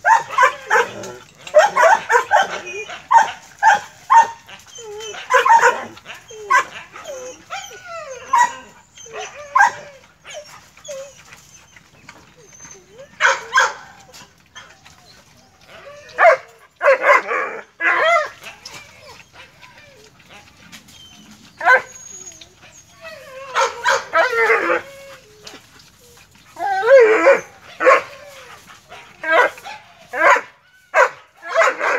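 Dogs barking and yelping in repeated loud bursts, with a few quieter stretches in between.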